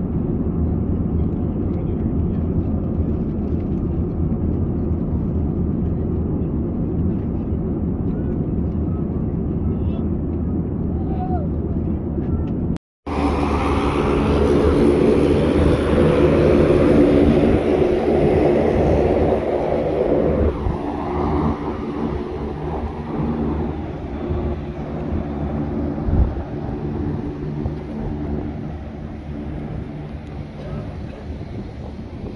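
Steady low roar of an airliner cabin in flight. After a sudden break about 13 s in, louder outdoor apron noise: an aircraft engine drone with several steady tones, strongest for the first few seconds and easing off after that.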